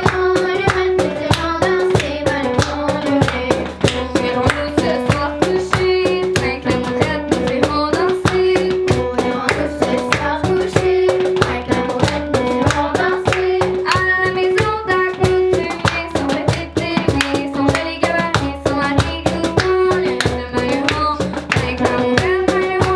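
Children singing a French-language song over digital piano, with a steady cajón beat and hand claps.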